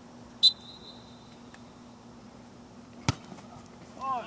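A referee's whistle gives one short, steady blast about half a second in, signalling that the penalty kick may be taken. About three seconds in, the soccer ball is kicked once with a single sharp thud.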